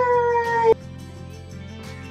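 A woman's high-pitched, drawn-out "bye-bye", the last syllable held and sliding slightly down in pitch, cut off about three-quarters of a second in. Soft background music carries on after it.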